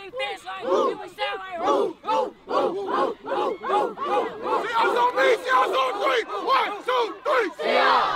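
A team of young football players shouting a pre-game chant together in a huddle, with rapid rhythmic yells, building to a loud group shout near the end.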